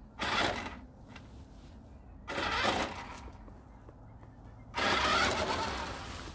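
Battery-powered toy RC off-road car driving in short spurts across brick paving: its electric motor and gears whir with the tyres on the stone, in three bursts each starting abruptly, the last and longest from about five seconds in.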